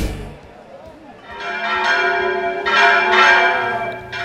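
Church bells ringing, several tones sounding together, coming in about a second in and swelling in waves as the bells are struck.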